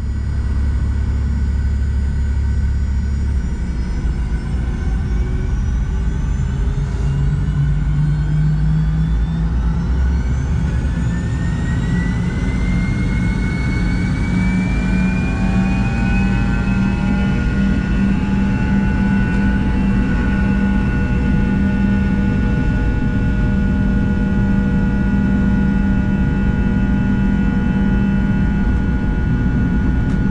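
Rolls-Royce Tay 620-15 turbofan engines of a Fokker 70, heard from the cabin over the wing, spooling up to takeoff thrust for the takeoff roll. A whine rises in pitch over the first half or so and then holds steady over a constant rumble.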